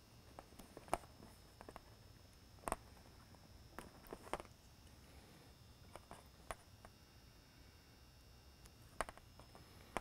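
Faint handling noise of thin wire leads being untwisted and alligator clips being handled, with a handful of scattered small clicks over a quiet room hum. The sharpest clicks come about a second in, near the middle and near the end.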